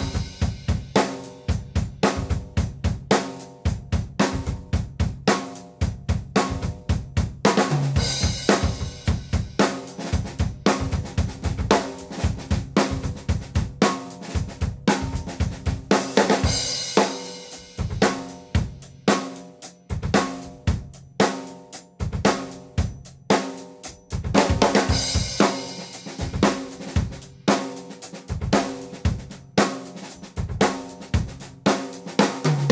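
Drum kit played as a continuous groove, switching between a plain beat and the same beat with quiet ghost notes added. A denser fill with a cymbal wash comes about every eight seconds, marking each switch between versions.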